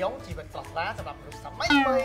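Men talking over background music, with a loud, drawn-out exclamation falling in pitch near the end.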